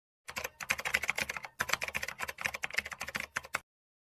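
Typing sound effect: a rapid run of key clicks, with a short break about a second and a half in, stopping shortly before the end.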